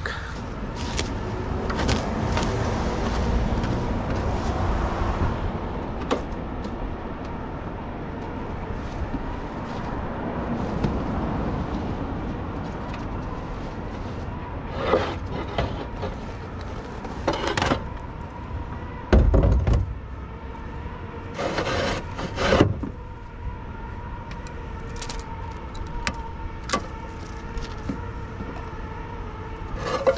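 Terracotta roof tiles clacking and knocking against each other as they are lifted off a stack in a pickup truck bed. There are a few sharp clacks in the middle, with one heavier thud about two-thirds of the way through, over steady outdoor background noise.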